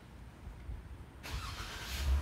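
A motor vehicle engine running, with a sudden rush of noise coming in a little past halfway.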